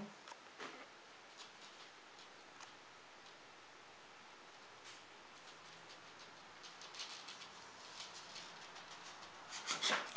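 Faint scratching and clicking of a monitor lizard's claws on the edge of its enclosure, as her feet slowly slip down and she pulls them back up. The scratches come more often in the last few seconds.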